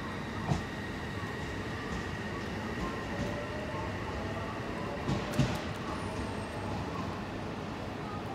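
Odakyu 3000-series electric train pulling away from the platform, its motors giving a faint rising whine as it gathers speed. There are a few sharp knocks, one about half a second in and two about five seconds in.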